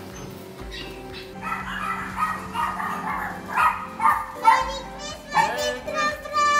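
Background music with excited children's shrieks and shouts, a quick run of short high calls starting about a second and a half in.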